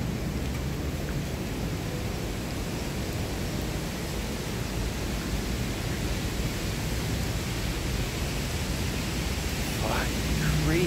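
Steady, even hiss of outdoor street ambience in light rain, with no distinct events.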